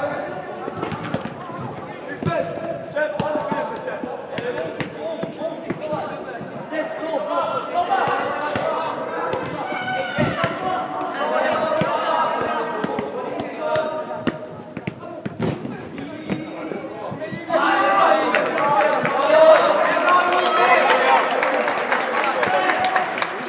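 Players' and coaches' shouts during a football match in an indoor sports hall, with sharp thuds of the ball being kicked scattered throughout. The shouting grows louder near the end.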